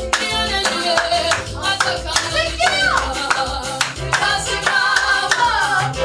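Small mixed group of young voices singing a gospel song together into microphones, with steady rhythmic hand claps keeping the beat.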